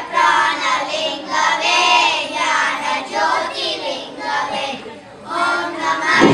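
A group of children singing a song together in unison, in sung phrases with a brief pause near the end before the next phrase.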